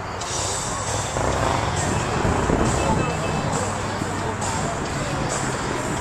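Car-show crowd ambience: people talking over background music with a regular beat, about one hit a second, and a steady low rumble like a vehicle running.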